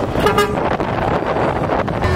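A single short horn toot about a quarter of a second in, over the steady low rumble of vehicles in a street procession.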